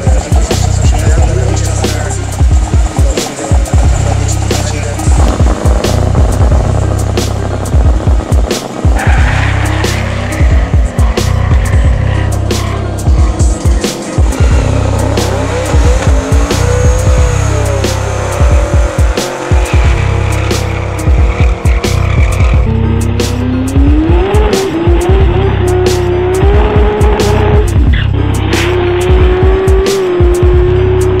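Music with a heavy, steady beat mixed with race-car engines revving and tyres squealing in drag-strip burnouts, with an engine's pitch climbing in the last several seconds.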